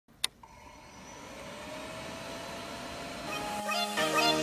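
Yamaha XJ6 motorcycle running, its engine and road noise swelling gradually, with one sharp click just after the start. Music comes in near the end.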